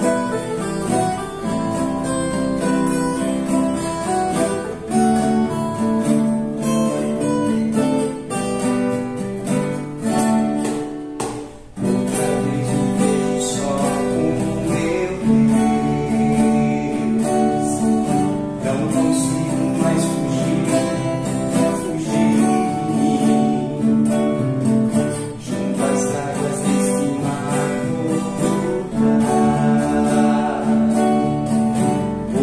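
Two acoustic guitars, one of them a nylon-string classical guitar, play a gentle picked and strummed accompaniment with a short break about eleven seconds in. A man's voice sings softly along.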